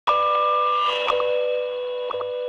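Electronic jingle of the guardian.co.uk video logo ident: a steady chord of bell-like tones that starts suddenly, with a pair of soft clicks about a second in as the highest tone drops out.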